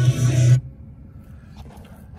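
Music from the car's FM radio, with heavy bass, stops suddenly about half a second in. What follows is a faint hiss with a few light clicks.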